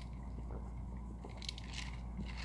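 A person drinking water from a plastic cup: a series of soft gulps and swallowing clicks, noisy enough to prompt an apology.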